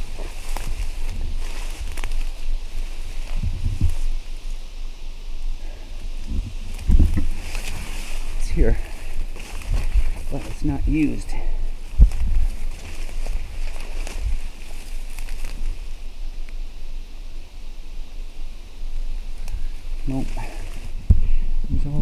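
Footsteps and brush swishing as a person walks through forest undergrowth, with irregular low thumps from the handheld camera moving. A few brief indistinct voice sounds come around the middle.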